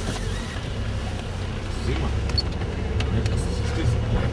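Car engine and running gear heard from inside a taxi's cabin: a steady low rumble, with a few faint clicks.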